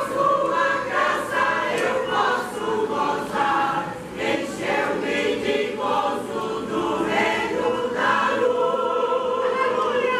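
Mixed church choir of women and men singing a gospel hymn together, in continuous sung phrases.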